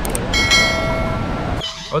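Two quick mouse-click sound effects, then a bell-like chime that rings for about a second, over a steady rush of ocean surf. It all cuts off abruptly about a second and a half in.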